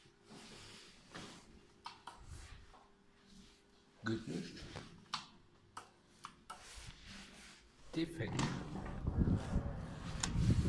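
Scattered clicks and knocks, then, from about eight seconds in, a louder steady rush of outdoor noise as a door to the outside opens.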